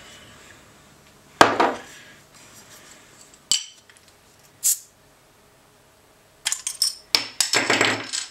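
A glass set down on a wooden table with a knock, then a bottle opener prying the crown cap off a beer bottle: a sharp click and, about a second later, a short high pop. Near the end come a cluster of small metallic clicks and rattles.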